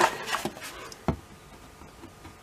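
Handling rustle as a Wera Kraftform Micro precision screwdriver is drawn from its fabric pouch, then a single sharp knock about a second in as the screwdriver is set down on cardboard.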